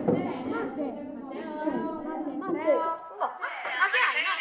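Indistinct chatter of several children's voices overlapping in a classroom, with no clear words.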